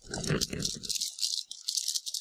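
Hands handling items at a desk during an unboxing, making a dense, crisp rattling and rustling that fills the second half.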